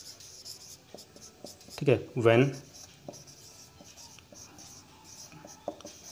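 Marker pen writing on a whiteboard in short, quick strokes, with a few light clicks of the pen tip against the board.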